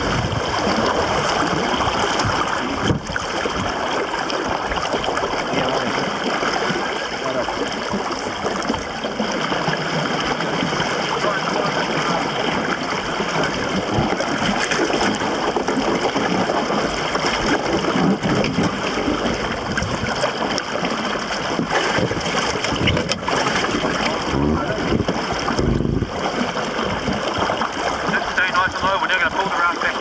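Water sloshing around and inside a partly submerged car in a river, a steady rush of water noise.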